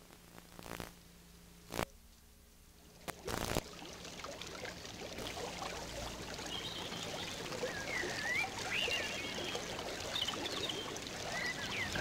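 A small creek running and splashing over rocks. It fades in about three seconds in and grows gradually louder, with a few high chirps over it. Before the water comes in there are a few short clicks in near silence.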